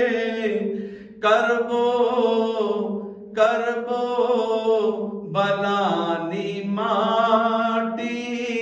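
A man's solo voice chanting a devotional Gujarati manqabat in long drawn-out phrases with wavering, ornamented held notes. He breaks off briefly twice early on, and the melody steps down in pitch a little past the middle.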